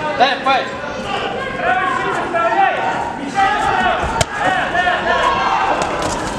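Several voices shouting and calling out over one another during a kickboxing bout, with one sharp smack of a blow landing about four seconds in.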